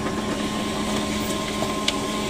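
Canon iR 2318 photocopier running a copy job: a steady whir of its motors and rollers with a faint high tone, and a light click near the end as a printed sheet starts to feed out of the exit rollers.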